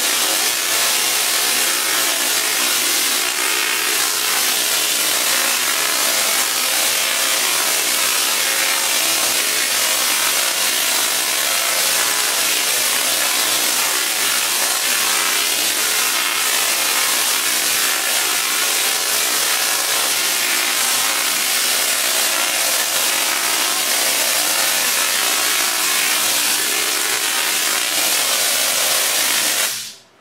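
BTC50 table-top Tesla coil firing continuously, its spark streamers from the toroid making a loud, steady buzzing crackle that cuts off suddenly at the end. This is a test run after initial tuning.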